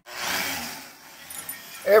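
Angle grinder with a sanding disc scouring the rusted steel plate of a wood-burning camp stove, stripping off old crust before re-seasoning. A hissing, abrasive scour starts suddenly and fades away within about a second.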